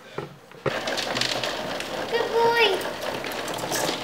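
Steady rush of water in a turtle tank, starting suddenly about half a second in, with a short child's vocal sound about two seconds in.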